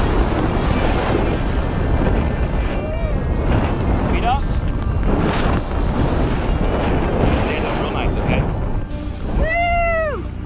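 Wind buffeting the camera microphone as a tandem parachute descends and lands, with a shouted voice near the end.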